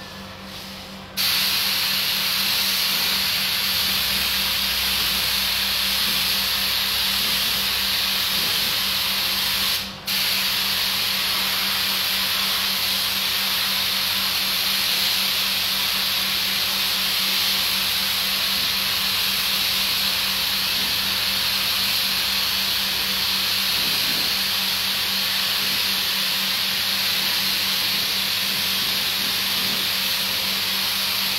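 Compressed-air paint spray gun hissing steadily as a car is sprayed. The hiss starts about a second in, breaks off briefly once near ten seconds when the trigger is released, then carries on. A steady low hum runs underneath.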